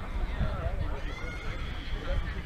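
Distant, indistinct voices of players and spectators calling and chattering across an outdoor softball field, over a steady low rumble of wind on the microphone.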